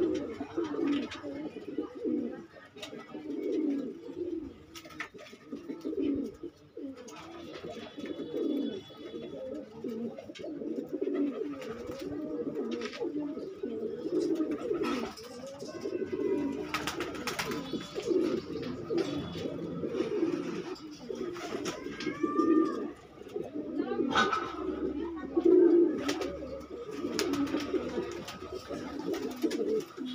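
Several caged ringneck doves cooing, low rolling coos overlapping almost without a break. A few sharper clicks and short chirps sound above them.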